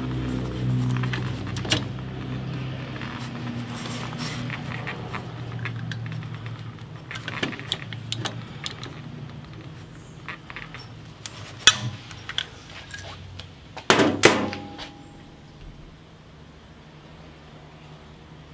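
Hand rivet gun worked on a steel rivet through the pack frame's tubing: scattered metallic clicks and knocks as the handles are squeezed, with the loudest snaps about fourteen seconds in.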